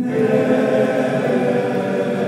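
Men's choir singing in several-part harmony, voices sustaining full chords.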